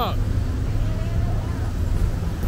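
Steady low rumble of vehicle engines and road traffic, including a parked minibus.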